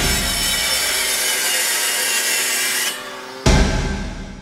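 Logo-animation sound effect: a steady sparking, grinding hiss like metal being cut, which stops abruptly near three seconds. A heavy impact hit follows about half a second later and rings out.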